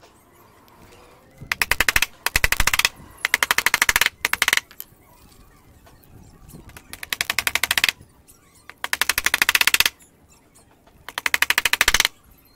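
Power driver fastening small wooden blocks to a plywood strip: seven bursts of rapid, even mechanical clattering, each about a second long, with short pauses between.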